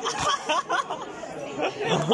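Several people's voices chattering at once, indistinct and overlapping.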